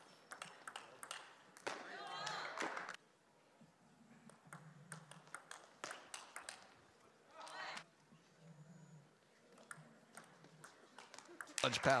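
Table tennis rallies: a celluloid-type ball clicking irregularly off the rubber paddles and the table top, with short gaps between strokes. A voice sounds briefly a couple of times between the clicks.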